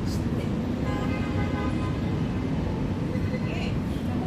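Steady city traffic noise from the streets below, heard from high up.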